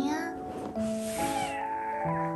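A house cat meowing, with a breathy call about a second in, over light background music.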